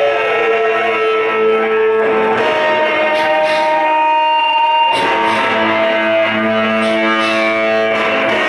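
Live garage-blues rock band playing, led by a distorted electric guitar holding long sustained notes with a string bend at the start. For a couple of seconds mid-way the bass and drums drop out and the guitar rings on alone, then the full band crashes back in about five seconds in.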